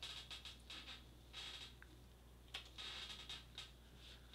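Faint clicks of typing on a computer keyboard, a few quick taps at first and then scattered single clicks, with a couple of brief soft hisses.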